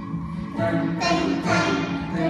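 A children's song playing, with a singing voice coming in and the music growing louder about half a second in.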